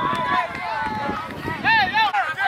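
Several voices shouting and calling out at once, high-pitched and overlapping, with a louder high shout near the end.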